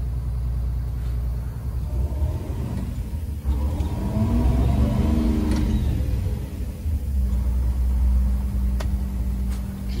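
Detroit Diesel two-stroke bus engine running. It revs up once near the middle and falls back to a steady idle.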